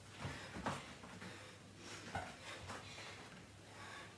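A woman breathing hard in short, faint puffs, out of breath from a cardio workout. Soft movement sounds come as she bends down and walks her hands out on an exercise mat.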